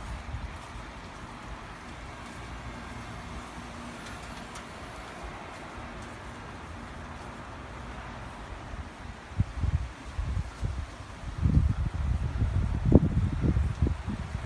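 Steady faint outdoor hiss, then from about two-thirds in a run of low rumbling bumps buffeting the phone's microphone, growing dense and loud near the end.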